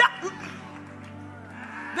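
Background music in a pause between spoken phrases: a low sustained keyboard chord held steady.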